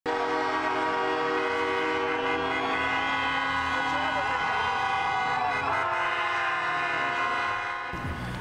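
Several vehicle horns sounding together in one long, unchanging chord, with a few voices sliding in pitch under it about halfway through. The horns drop away near the end.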